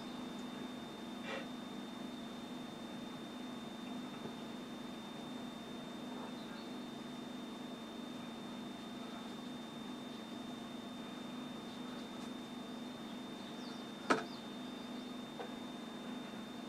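Steady low electrical hum with a thin, steady high-pitched whine, and one sharp knock near the end, with a fainter click about a second in.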